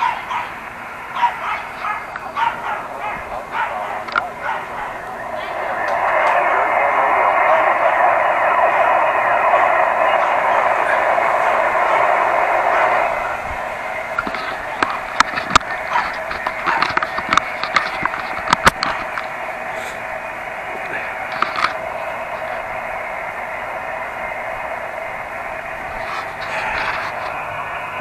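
Receiver static from an Elecraft KX2 HF transceiver's speaker: a steady, narrow band of hiss that swells louder for several seconds in the first half. In the second half a dog barks a number of short, sharp times.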